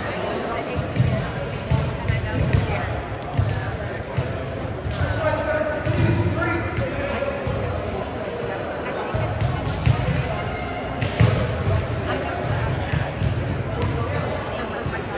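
Volleyballs being passed and hit during warm-up and bouncing on a hardwood gym floor: irregular sharp smacks that echo around a large gym, with voices talking.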